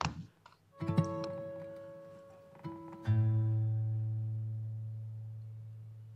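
Recorded guitar sound-effect layers playing back from a multitrack session. Plucked notes start about a second in and again near the middle, and each is left to ring and fade. A deep low note, the loudest, comes in about three seconds in and decays slowly.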